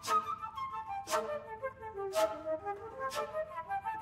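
Flute quartet playing an interweaving melodic passage in several voices, punctuated by a sharp percussive accent about once a second.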